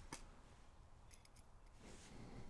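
Near silence broken by a few faint, small clicks: steel tweezers and a tiny lock pin tapping as the pin is set into a pin tray. One click comes at the start and a few more about a second in.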